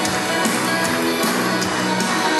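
Live worship band music: guitar and sustained tones over a steady beat, a little over two beats a second.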